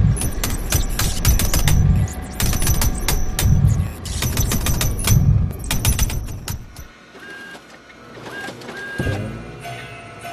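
Dot-matrix style printer mechanism printing line by line: bursts of rapid clicking with deep thumps, about one pass a second. The printing stops about seven seconds in, leaving quieter steady tones and a short rising glide.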